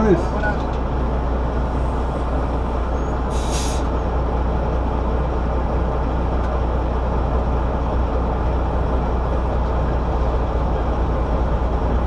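Tractor-trailer's diesel engine idling steadily, heard from inside the cab. About three and a half seconds in, a short hiss of air from the truck's air system.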